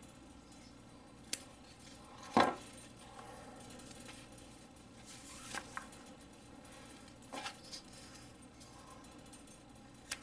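Small D2-steel flipper knife blades slicing through cord: a few short, sharp snips and clicks spread across a quiet stretch, the loudest about two and a half seconds in.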